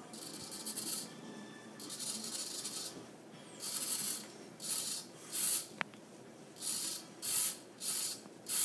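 Hobby servo motor whirring in short bursts as it swings a pencil pointer back and forth, following a potentiometer turned by hand. There are about eight bursts, shorter and closer together in the second half, and one sharp tick just before the sixth second.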